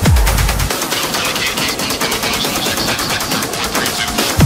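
Trance music with the kick drum and bass dropping out about a second in, leaving a fast, even drum roll over a hazy synth wash: a breakdown build-up.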